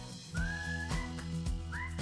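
Background music: a whistled melody with pitch slides over a steady beat and bass, a little under two beats a second.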